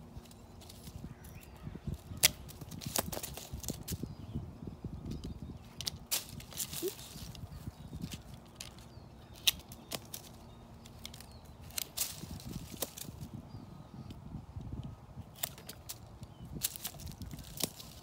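Long-handled bypass loppers cutting rootstock suckers at the base of a fruit tree: irregular sharp snaps, one every second or two, as the blades close through thin shoots. Between the snaps there is rustling of the cut stems and the mulch.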